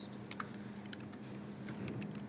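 Computer keyboard being typed on in quick, irregular keystrokes as a shell command is entered.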